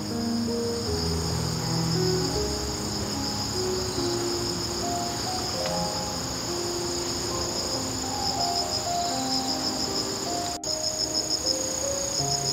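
A steady, high-pitched chorus of insects such as crickets chirring outdoors, pulsing faster in the last few seconds, with a soft melody of background music underneath.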